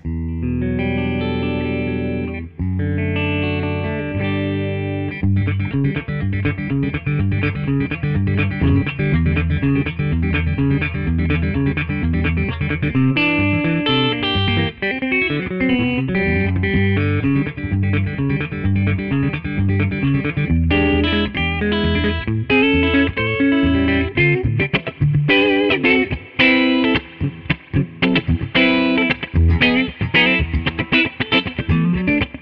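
Gibson Custom Shop Historic 1957 Les Paul electric guitar played through an amplifier on both pickups together, its BurstBucker 1 and 2 humbuckers in the middle switch position. It opens with two held, ringing chords, then moves into picked riffing that turns choppier and faster about two-thirds of the way through.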